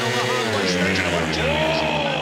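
Several 500cc single-cylinder speedway bike engines revving hard together as the riders leave the start gate, with the engine note changing about half a second in.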